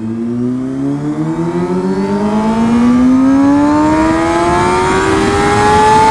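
Kawasaki ZX-6R 636 sport bike's inline-four engine pulling hard in one gear, its pitch rising steadily for about six seconds with no gear change, over wind rush.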